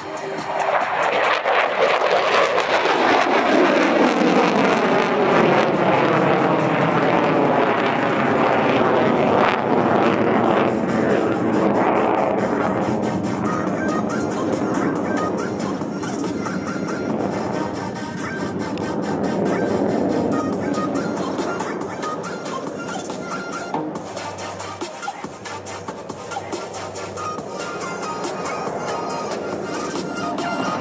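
F-22 Raptor fighter jet's twin turbofan engines flying past, the noise building over the first two seconds and then sliding down in pitch in a long falling sweep, easing and swelling again as the jet manoeuvres. Background music plays under it.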